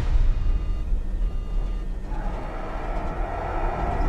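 Movie trailer soundtrack heard through a speaker: a steady deep rumble with faint thin high tones in the first half, joined by a hiss about halfway through.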